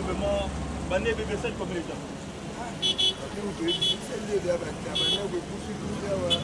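A man talking over street noise: a low engine hum that dies away about a second and a half in, and three short, high beeps in the middle.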